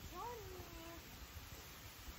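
A single high, meow-like call, rising and then falling in pitch, about a second long, over a faint low rumble.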